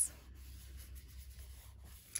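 Faint rubbing of fingertips pressing and smoothing a strip of patterned paper down onto cardstock, setting the adhesive so the paper sticks.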